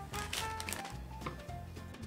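Background music: short held notes over a steady low bass line.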